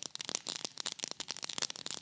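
Freshly dry-roasted white peppercorns being crushed with a pestle in a stone mortar: a dense, rapid crackling as the crisp corns crack and grind against the stone.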